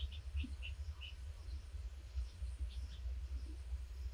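Faint outdoor ambience: a low steady rumble, with a bird chirping a quick run of about five short high notes in the first second and a couple more near three seconds.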